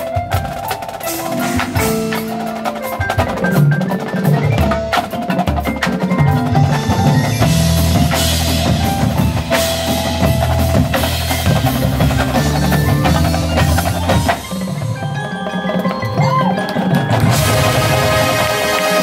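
Marching band percussion playing a feature: marimbas and other mallet percussion with drums and bass drums, many struck notes over sustained low notes.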